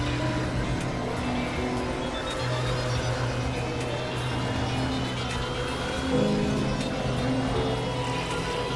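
Noisy experimental synthesizer drone music: a dense, grainy texture over a low held tone that drops out and returns, with a thin high tone rising slowly through the second half.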